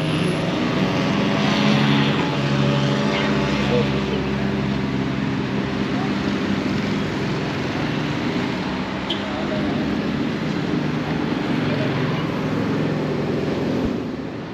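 Steady engine drone with a hum on several pitches, over traffic noise from the road.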